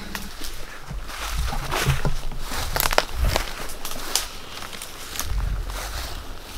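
Footsteps walking through brush and undergrowth on a woodland path, an irregular run of rustles and crackles over a low rumble.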